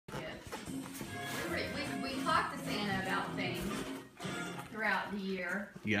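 Indistinct voices over music, from a television playing in the room.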